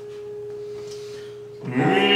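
A single soft note held steady on a digital piano through a pause in an operatic aria. Near the end, piano chords and operatic singing come back in loud.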